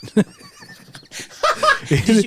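A man laughing: a faint, high, wavering laugh that breaks into louder voiced laughs in the last half second.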